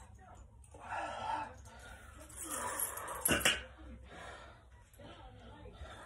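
A man's breathy vocal sounds, exhales and murmured noises, from exertion during a resistance-band set. A sharp click comes a little over three seconds in.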